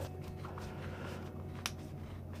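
Faint handling noise of gloved hands twisting the plastic cable gland tight on a 32 A commando plug, with one sharp click about one and a half seconds in, over a low steady hum.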